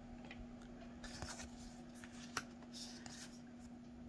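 Tarot cards rustling and sliding against each other in the hands as one card is moved aside for the next, with a light click about two and a half seconds in. A faint steady hum lies underneath.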